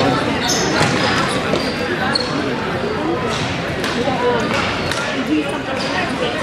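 Indoor field hockey play in a large, echoing hall: several sharp knocks of sticks on the ball and the ball striking the boards, with a few short high squeaks, over the steady chatter of voices.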